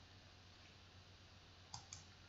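Near silence with two faint clicks close together near the end: a computer mouse button being clicked to advance a presentation slide.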